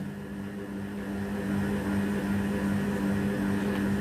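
A steady low hum with a buzzy, even tone that does not change.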